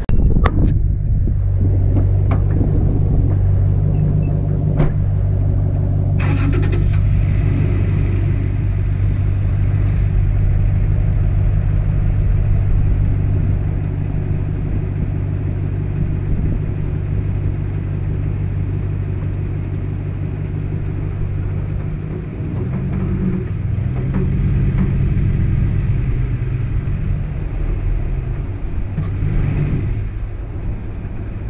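Pickup truck engine running steadily during a recovery-strap pull in soft sand, with a few sharp knocks in the first seconds. About two-thirds of the way through, the revs rise and hold, then ease off near the end.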